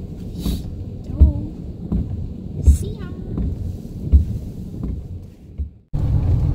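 Road noise inside a moving van's cab, with a soft low thump repeating about every one and a half seconds. It drops away suddenly near the end.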